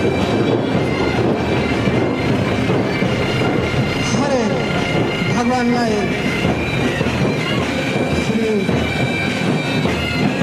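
Bagpipes of a marching army pipe band playing, their steady drones held over a thick wash of street and crowd noise. A few voices call out about halfway through.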